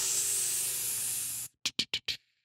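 A steady hiss lasting about a second and a half, followed by a few short clicks.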